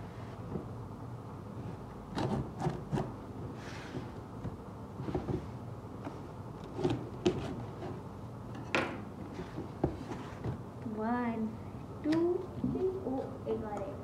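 A cardboard shipping box being slit open with a knife and handled: scattered scrapes, taps and knocks on the cardboard, the sharpest about nine seconds in.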